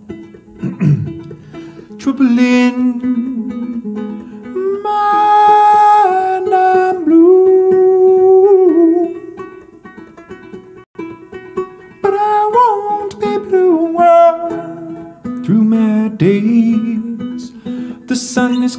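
Banjo picked while a man sings long, drawn-out high notes with no clear words, the notes wavering and sliding between pitches.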